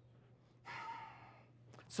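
A man's single audible sigh, a short breath out lasting about half a second, a little over half a second in, over a faint steady hum.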